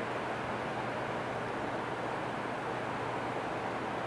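Steady, even hiss of room noise with a faint low hum, unchanging throughout.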